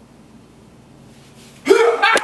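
Quiet room tone, then near the end a sudden loud yell from a person, rising in pitch as it starts.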